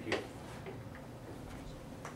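Room tone of a small office: a faint steady hum, with one short click just after the start.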